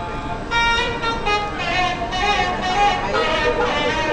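A bright, horn-like reed wind instrument playing a melody of held, shifting notes, starting about half a second in, over a background of voices.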